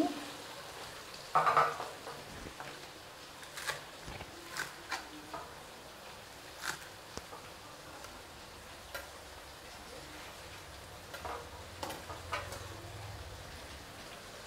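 Vegetables frying in a stainless pan on a gas burner: a brief louder burst about a second and a half in, then a low steady sizzle with scattered sharp clicks and pops.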